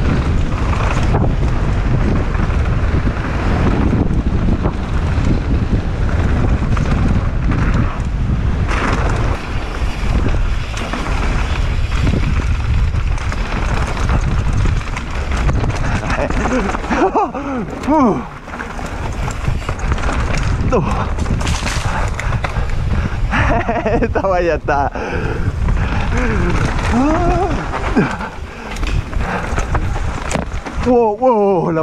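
Wind rushing over the camera microphone and mountain bike tyres rolling over a dry dirt trail during a fast descent, with the bike rattling and knocking over bumps. Short vocal calls come through twice, past the middle and near the end.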